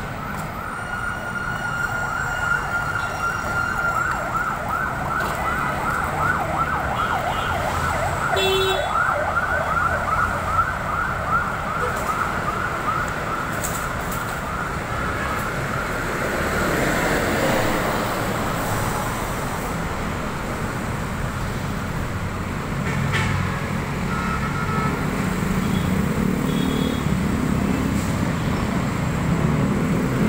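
Ambulance siren in a fast yelp, rising and falling about four times a second, which fades out about halfway through. Street traffic with vehicle engines follows.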